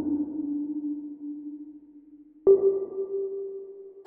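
Instrumental hip-hop beat at a breakdown with the drums out: a single low held synth note slowly fades away. About two and a half seconds in, a higher held note comes in suddenly and sustains.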